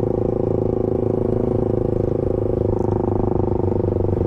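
Motorcycle engine running at a steady speed while being ridden: an even, unbroken drone with no gear changes or revving.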